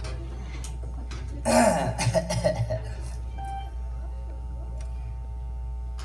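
A man clears his throat in a short burst about a second and a half in, over a steady low electrical hum.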